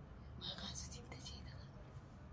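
Quiet whispered speech, soft and hissy, for about a second near the middle, over a low steady hum.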